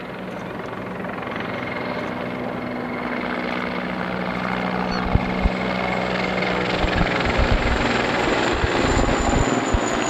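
Mi-24 attack helicopter with twin turboshaft engines flying in and closing overhead, its rotor and engine noise growing steadily louder with a steady whine. From about halfway, low irregular thuds come in.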